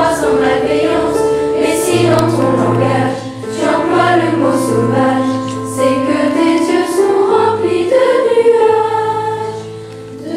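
A large choir of teenage voices, mostly girls, singing held, flowing phrases in several parts over a low sustained note; the sound dips briefly about three seconds in and fades at the end of a phrase near the end.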